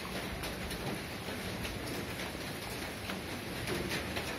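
Dogs and kittens eating dry food off a concrete floor: scattered faint crunches and clicks over a steady background hiss.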